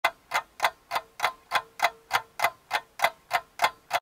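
Sharp, evenly spaced ticking like a clock or timer, a little over three ticks a second, with a faint steady tone under the middle part.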